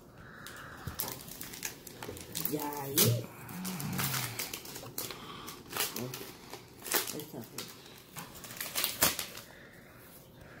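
Foil wrapper of a trading-card booster pack being torn open and crinkled by hand, with sharp crackles scattered throughout. A short voice sound comes about three seconds in.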